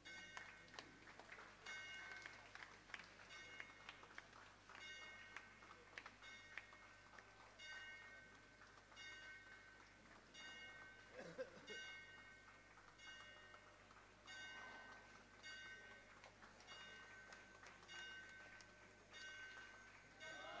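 Faint ringing of a metal temple bell, struck over and over about once or twice a second, each strike ringing on with several clear tones.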